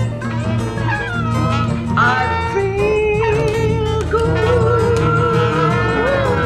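Saxophone playing a slow melody over a multitrack backing with a steady bass line: a few short falling phrases, then a long held note with a slight waver from about halfway through.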